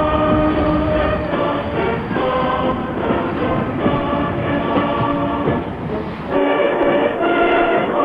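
A choir singing slow, held chords, a solemn choral piece. A low rumble sits underneath during the first second or so.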